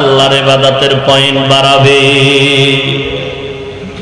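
A man's voice chanting long, drawn-out melodic notes without words, in the sung style of a Bangla waz preacher; the held tone breaks briefly about a second in and fades away in the last second.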